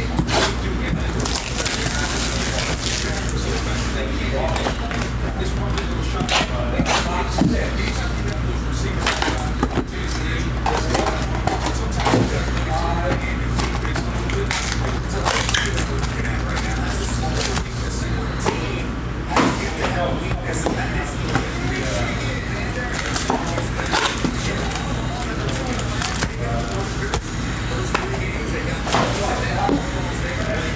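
Cardboard trading-card hobby box and its foil packs handled and opened, with many sharp crackles, clicks and rustles of card stock and foil, over steady background music.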